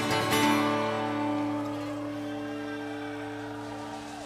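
Live acoustic guitar strumming a last chord about half a second in, which then rings on and slowly fades as the song ends.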